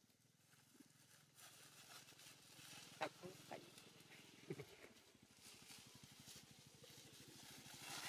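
Quiet forest ambience with two brief macaque calls that fall in pitch, one about three seconds in and a lower one about a second and a half later.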